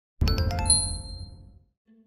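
Short logo sound effect: a low hit with a few quick, bright chime notes about a quarter-second in, ringing on and fading away by about a second and a half.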